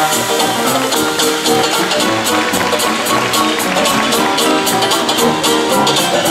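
Traditional jazz band playing live, with cymbal strokes keeping a steady, even beat under the horns.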